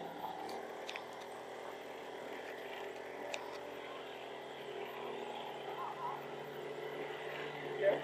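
A vehicle engine running steadily at low road speed, a constant low hum, with a few faint ticks in the first few seconds.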